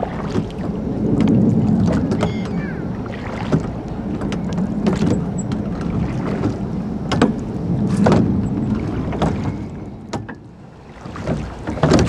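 Small rowing boat being rowed: a steady rushing of water and air that swells and eases with the strokes. Several sharp knocks of the oars in the rowlocks are scattered through it.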